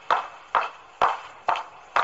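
A sharp knock or click repeated at a steady pace of about two a second, each with a short ringing tail.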